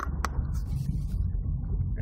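Steady low rumble of a car's engine and tyres heard inside the cabin while driving at speed on a motorway, with a short click just after the start.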